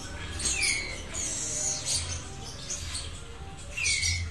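Birds chirping, with high squeaky chirps and two short downward-sliding calls, one about half a second in and one near the end, over faint background music.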